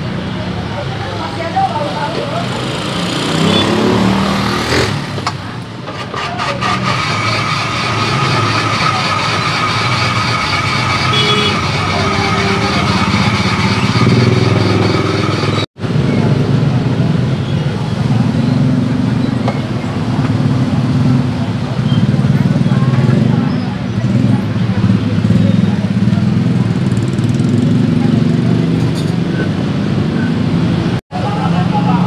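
An ice-shaving machine runs with a steady whine for about ten seconds as it shaves a block of ice, over a background of street traffic and voices. After a break about halfway through, the whine is gone and a low traffic rumble with motorbikes and chatter remains.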